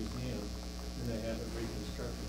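Steady electrical mains hum, with faint, indistinct talk over it.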